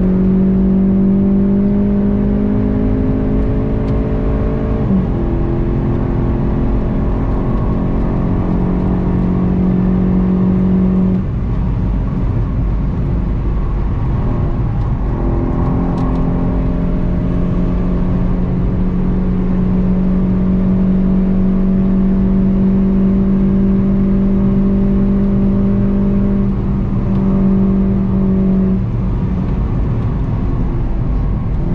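VW Golf GTI TCR's turbocharged 2.0-litre four-cylinder pulling hard, heard from inside the cabin over tyre and road noise. Its pitch climbs slowly, with a break about five seconds in, a lift off the throttle around eleven seconds before it picks up again, and another break near the end.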